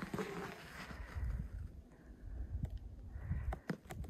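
Footsteps in frozen, squeaking snow, with uneven low wind rumble on the microphone and a few sharp clicks from about two and a half seconds in.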